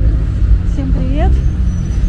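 Street traffic rumble, low and fluttering, with a woman's voice rising briefly in pitch about a second in.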